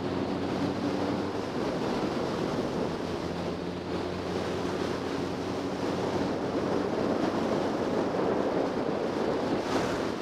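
Wind buffeting the microphone of a sport motorcycle ridden along at road speed. The engine's steady drone lies faintly underneath.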